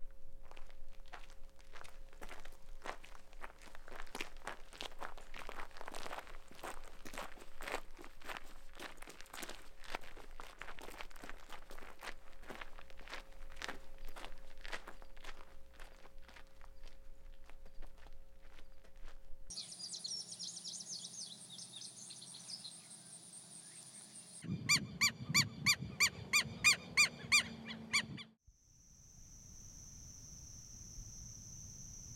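Footsteps of two people crunching along a gravel road at a walking pace, under a faint steady drone. Later a high insect buzz takes over, then near the end a loud call repeats about a dozen times in quick succession, and crickets start as it ends.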